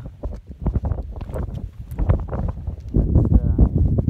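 Wind buffeting the phone's microphone: a gusty low rumble that grows louder in the last second.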